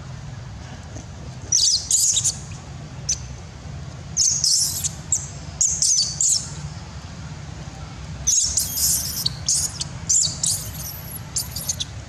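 Infant long-tailed macaque giving shrill distress squeals in four short bouts, the last and longest near the end.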